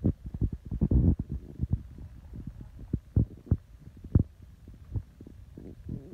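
Irregular low thuds and bumps, with a few sharper knocks about a second, three seconds and four seconds in: handling noise from a handheld phone being moved around.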